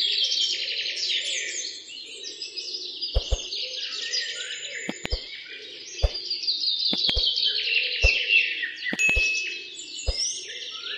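Songbirds chirping in rapid, falling trills over a steady low drone, with dull low thumps, some doubled, about once a second from about three seconds in.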